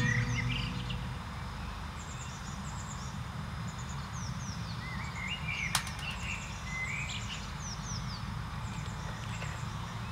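Birds calling: repeated short, high, falling chirps and a few lower warbling calls over a steady low background noise, with one sharp click just past the middle. A last guitar note dies away in the first second.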